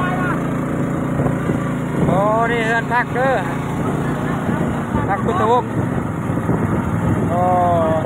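A small boat's engine runs steadily through floodwater under a wash of water and engine noise, and voices call out briefly three times.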